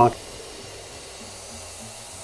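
Compressed air hissing steadily from an air-compressor hose at the valve of a tubeless fat-bike tire, blowing past the bead, which has not yet sealed on the rim.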